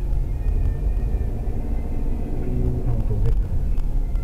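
Car engine and tyre rumble heard from inside a moving taxi's cabin, a steady low drone while driving in traffic.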